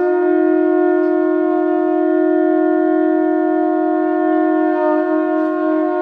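Two conch shells (shankha) blown together in one long, unbroken, steady note that holds its pitch without a break for breath.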